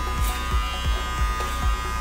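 Wahl Senior hair clippers running with a steady buzz, cutting hair over a comb in a clipper-over-comb fade.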